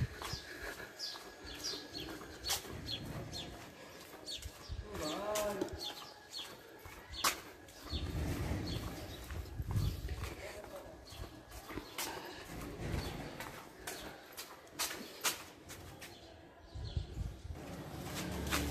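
Quiet outdoor street ambience with birds chirping and a cooing call about five seconds in, over scattered knocks and bumps from walking and handling the camera.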